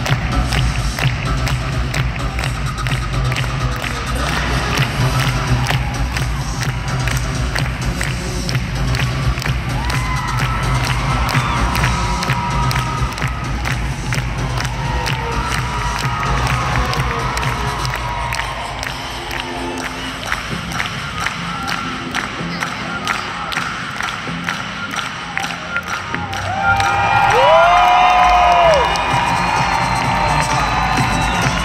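Arena audience cheering and clapping over the skater's program music played through the arena sound system. Near the end the cheering swells louder, with a high cry that rises and falls.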